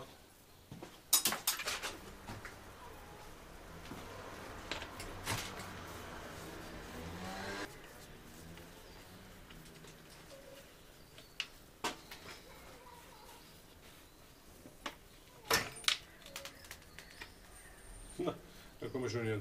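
Handling noise from work on a bicycle bottom bracket: scattered metallic clicks and knocks, with a few seconds of hissing rustle in the middle that stops abruptly.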